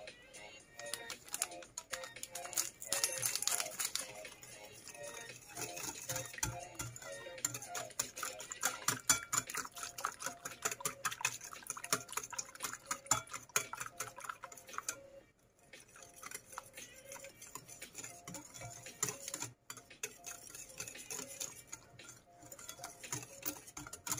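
Wire whisk beating runny cake batter in a ceramic bowl: rapid clicking and scraping of the wires against the bowl, with brief pauses, over soft background music.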